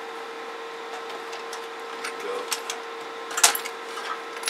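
Steady electrical hum and hiss from running bench radio and test equipment, with a few faint clicks and one sharper click about three and a half seconds in.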